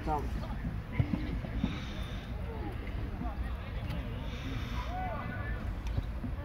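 Faint calls and shouts of football players across the pitch over a steady low rumble, with a couple of short knocks a second or so in.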